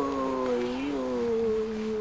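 A drawn-out, wavering wail that slowly falls in pitch, fading out just after the end.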